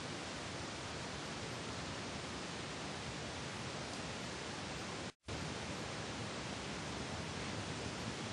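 Steady, even recording hiss with no other sound in it; it drops out completely for a split second about five seconds in, where one clip is cut to the next.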